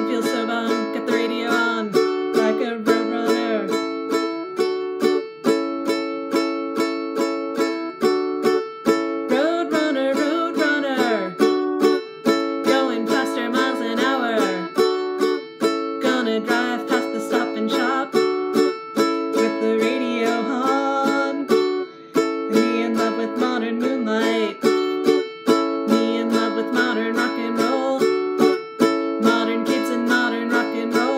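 Ukulele strummed in a steady, even rhythm, switching back and forth between two chords.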